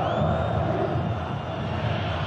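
Football stadium crowd just after a goal, a dense steady din of many voices with no single voice standing out.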